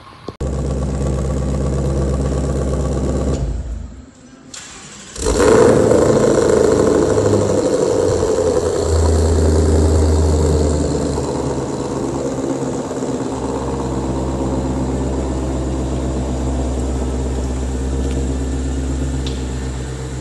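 2020 Shelby GT500's supercharged 5.2-litre V8 firing up about five seconds in, then idling. The idle is loudest just after the start and settles slightly. Before it there is a steady low droning sound for a few seconds and a short lull.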